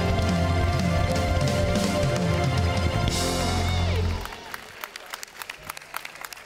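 Live band music with sustained chords over a heavy bass, which ends about four seconds in. Audience applause continues after it.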